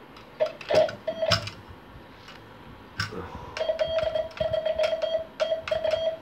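A semi-automatic telegraph key (bug) sending Morse code, heard as an on-off sidetone beep with the key's contacts clicking. There are a few short beeps about half a second to a second and a half in, then a fast run of dots from about three and a half seconds in, from the freshly adjusted pendulum.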